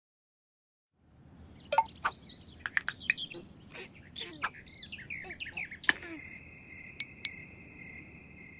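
Cartoon sound effects: bird chirps and tweets over a soft background hum, broken by several sharp clicks. From about six seconds in a steady cricket trill takes over, with two more clicks.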